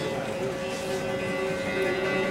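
Persian long-necked lute (tar or setar family) with its strings ringing softly in a few light plucked notes, over a steady hum.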